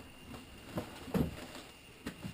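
Cloth handling as a flak vest is pressed and patted into place: soft rustling with a couple of short dull knocks a little after the middle.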